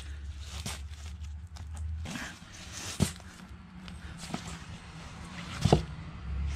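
Vinyl LP sleeves being flipped through and pulled from a cardboard box: soft rustling of sleeves and shrink-wrap with several sharp clicks and knocks as records tap against each other, over a low steady hum.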